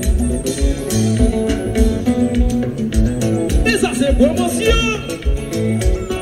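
Live band playing: bass, guitar and keyboard over a steady beat, with a voice on the microphone briefly about four seconds in.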